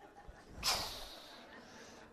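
A man drawing a quick, audible breath about half a second in, the hiss fading away over the next second.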